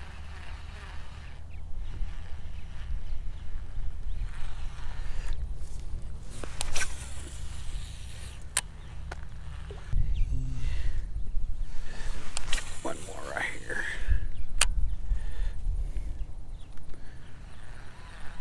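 Handling noise from a baitcasting reel and rod during a cast and retrieve, with a few sharp clicks, over a low rumble on the microphone that grows louder about ten seconds in and again near the end.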